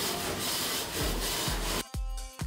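A long-handled brush scraping back and forth over the expanded-metal grates inside a steel smoker's cooking chamber, metal rubbing on metal. Music with a deep beat comes in about halfway through and takes over near the end.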